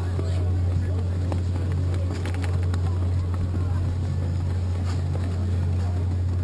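A steady, unchanging low motor hum, with faint voices and a few light knocks about two seconds in.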